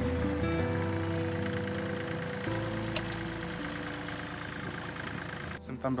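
Compact tractor with a mounted air-blast vineyard sprayer running steadily: a low engine hum under a wide hiss, mixed with background music.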